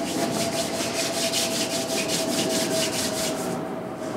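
A paintbrush scrubbing paint back and forth in quick, even strokes, about five a second, stopping shortly before the end, over a faint steady hum.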